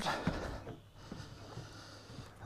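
Low wind and water noise on an open boat, with a few faint clicks from a large conventional fishing reel being handled.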